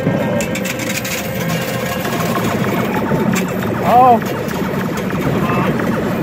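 Coins clinking and clattering in a coin pusher machine during rapid-fire play, over a steady arcade din with machine music.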